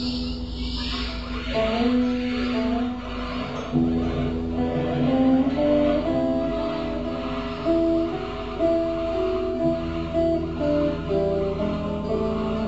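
Improvised music: an electric guitar playing a slow line of single held notes, each sustained for about a second, over a steady low drone.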